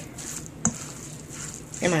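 Silicone spatula stirring a wet mix of chopped raw salmon and diced peppers and onion in a stainless steel bowl: soft squishing and scraping, with one sharp tap about a third of the way in.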